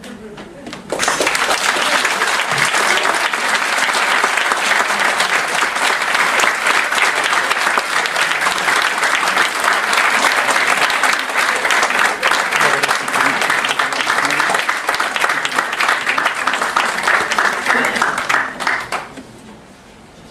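A seated audience applauding, a dense, steady clatter of many hands clapping that starts about a second in and dies away near the end.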